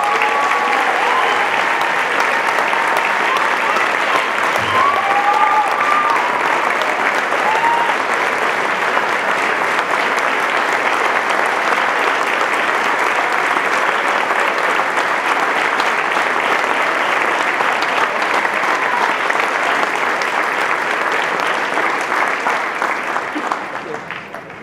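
Audience applauding steadily for about twenty seconds, with a few voices calling out over the clapping in the first several seconds; the applause tapers off near the end.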